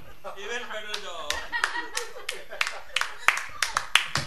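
A small group applauding: scattered, irregular hand claps that grow thicker through the second half, with voices talking and laughing over them.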